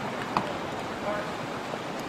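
Outdoor ambience: a steady wash of wind and traffic noise under faint distant voices, with one sharp click about a third of a second in.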